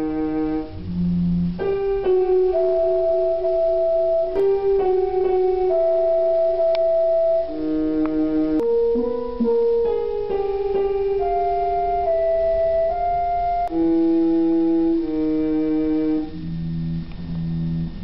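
Slow electronic music of held keyboard-like notes, several sounding together over a lower bass part, with the notes changing every second or two. The notes are generated by sensors under the fish bowls as the goldfish move through the water.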